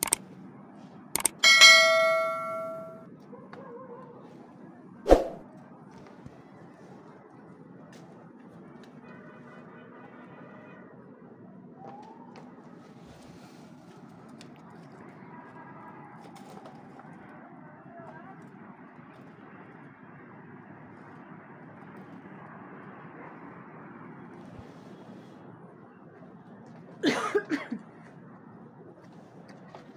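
A metal object is struck and rings out with a clang that dies away over about a second and a half. A few sharp knocks come before it and after it, and more follow near the end.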